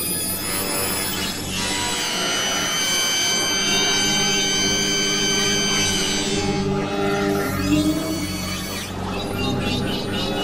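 Electronic music built from whale recordings: low drones under a cluster of steady high tones held from about two to six seconds in.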